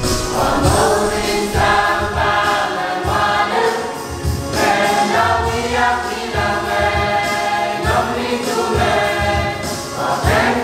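A mixed group of young singers singing a church song together in held notes, over a steady low beat of about two pulses a second.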